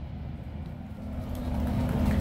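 Low rumbling of an outdoor fireworks and fountain show in a lull between bursts, with a held low note of the show's music swelling in about halfway through.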